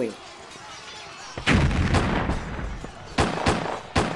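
Battle sound effect of gunfire and cannon fire. A sudden loud blast about a second and a half in rumbles on for over a second, and then a few sharp shots crack out near the end.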